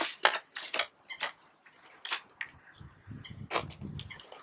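Cardboard box and clear plastic tray packaging handled and opened by hand: a scatter of sharp clicks and crackles, several in the first second and a few more later, with a low handling rumble near the end.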